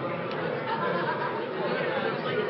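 Many people talking at once in a large room: the overlapping chatter of an audience discussing in small groups during a workshop activity.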